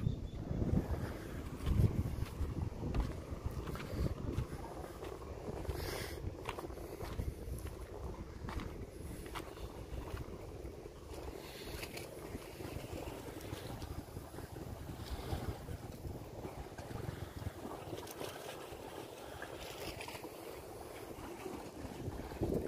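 Wind buffeting the phone's microphone in uneven gusts at the seashore, strongest in the first couple of seconds.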